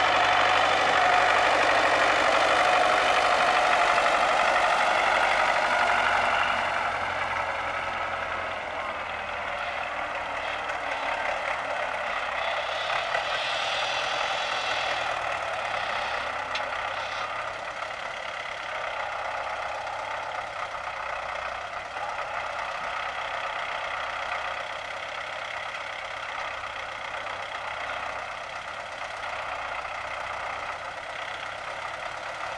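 MTZ-80 tractor's four-cylinder diesel engine running while its front loader carries and lifts a round hay bale. Louder for the first six seconds or so, then quieter and steady.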